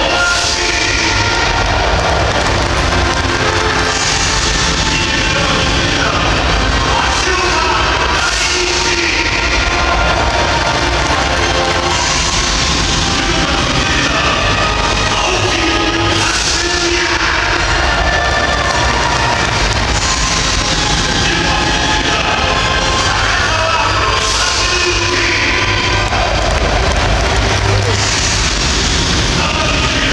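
Loud rock music over the stadium PA, mixed with a large crowd of football supporters singing and shouting along. It swells about every four seconds.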